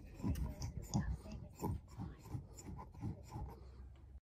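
Faint, irregular rubbing and bumping: handling noise from a phone being adjusted on its mount.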